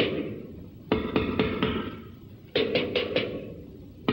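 Drum kit beaten in quick bursts of strokes, a run of about five hits about a second in and another run past halfway, each burst followed by the cymbal ringing away.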